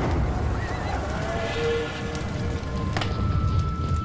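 A horse whinnying in a sound-effects bed of battle ambience, over a steady low rumble and music.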